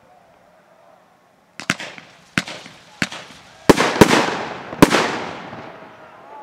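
Fireworks going off: about seven sharp bangs in just over three seconds, beginning about a second and a half in, each trailing a long rolling echo.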